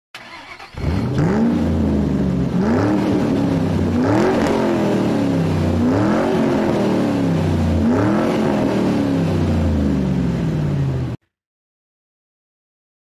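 Car engine revved repeatedly over a low idle, about five blips that each climb in pitch and settle back down; the sound cuts off suddenly near the end.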